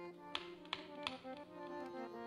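Instrumental kirtan passage: harmonium playing a melody over a held drone note, with sharp tabla strokes about three times a second.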